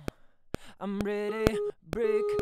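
Soloed vocal take playing back: a sung held note that starts about a second in, breaks off briefly and comes back near the end, with sharp clicks scattered through.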